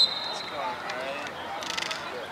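A referee's whistle blast that trails off in the first half second, followed by voices on the field and a brief rapid clatter of clicks near the end.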